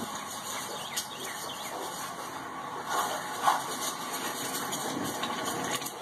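Steady hiss-like background noise from a TV playing an old outdoor home video, with a few faint, brief sounds about one and three seconds in.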